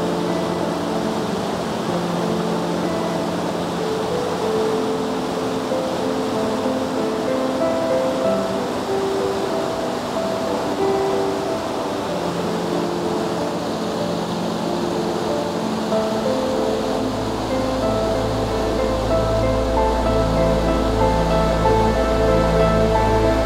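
A river pouring in white-water cascades over rocks, a steady rush of water, with background ambient music of held soft notes laid over it. A low bass drone joins the music about two-thirds of the way through.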